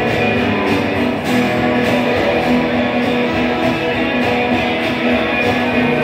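Acoustic guitar strummed in a steady rhythm, played live.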